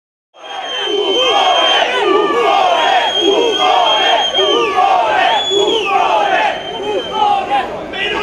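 A crowd of protesters shouting together in a repeated rhythm, with a high steady tone sounding over the voices several times.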